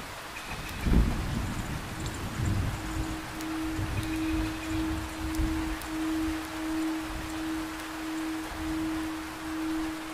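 Recorded rain ambience with a low roll of thunder that starts about a second in and rumbles on for several seconds. Around three seconds in, a single held tone enters and keeps swelling and fading gently, a soft meditation-music drone over the rain.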